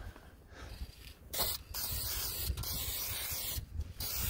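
Aerosol can of Fluid Film undercoating spraying with a steady hiss, in several bursts with brief pauses. The spraying starts about a second in.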